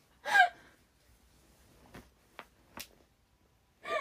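A young woman gasping with laughter, high and squeaky, in two short bursts: one just after the start and one at the very end. This is helpless laughter that leaves her short of breath.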